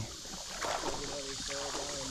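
Shallow creek water lapping and sloshing around people wading in it, with faint background talk from about halfway through.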